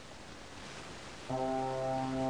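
Faint hiss, then about a second and a quarter in an electronic keyboard sounds a sustained chord that starts abruptly and holds steady.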